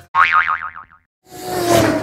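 Transition sound effects over an animated logo graphic: a springy boing with a quickly wobbling pitch, a brief gap, then a swelling whoosh near the end.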